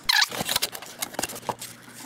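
Paper and cardboard packaging being handled as the kit's contents are pulled out of the box: a brief loud scrape right at the start, then scattered light rustles and clicks that fade toward the end.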